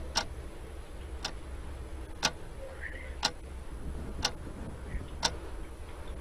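Quiz-show countdown clock sound effect ticking steadily, one sharp tick each second, marking the time left to answer.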